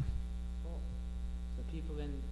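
Steady low electrical mains hum in the audio, with a faint short murmur of voice near the end.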